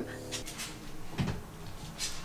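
A dog's brief whimper at the start, followed by a soft low thump about a second in.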